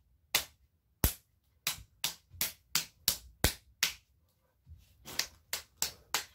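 A hand slapping a bare belly: a run of sharp slaps, two or three a second, a short pause about four seconds in, then a few more.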